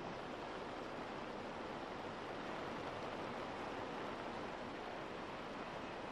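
Steady rushing background noise, even in level, with no distinct events.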